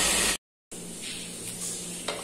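Meat sizzling as it fries in a pan: a loud steady hiss that cuts off abruptly about half a second in. After a brief silence a much quieter steady hiss with a faint low hum follows.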